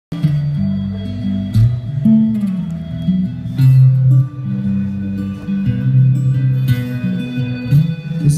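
Solo acoustic-electric guitar played live through a concert PA, a slow chord progression whose chords change about once a second.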